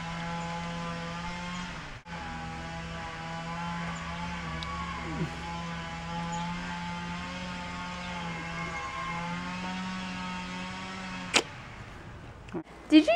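Steady droning machine hum, briefly cut out about two seconds in, with a sharp click near the end.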